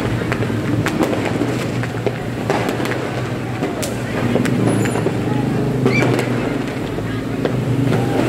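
Street ambience of motorbikes running past, with distant voices and a few sharp, scattered firework pops over the steady traffic noise.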